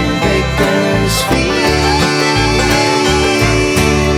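A bluegrass band of acoustic guitar, banjo, fiddle and bass plays the instrumental close of a song, with no singing. Near the end a chord is struck and left ringing.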